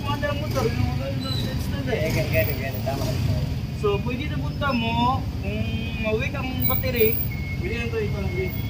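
People talking, over a steady low rumble.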